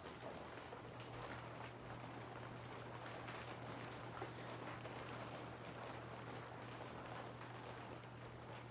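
Faint rain falling steadily, over a low steady hum.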